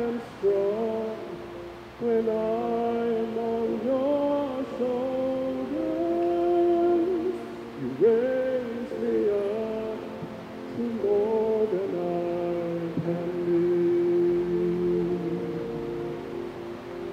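A slow song playing, its melody moving in long held notes of about a second each.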